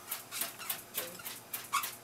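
A dog panting rhythmically, about three breaths a second, with a faint whine or two.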